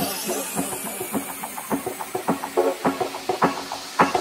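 Hardcore electronic dance music in a breakdown: the deep kick drum has dropped out, leaving a run of rhythmic snare-like hits under a sweeping high noise.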